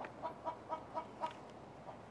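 A bird calling in a faint, steady run of short, evenly spaced notes, about four a second.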